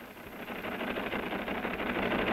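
Typewriter typing in a rapid, continuous clatter of keystrokes, fading in over the first half-second.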